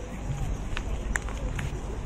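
Footsteps of several people walking on a paved path, with faint indistinct voices and a few short sharp ticks, the loudest a little past a second in.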